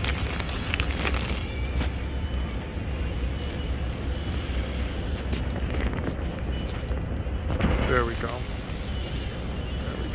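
City street traffic: a steady low rumble of cars, with a few clicks early on and a brief voice about eight seconds in.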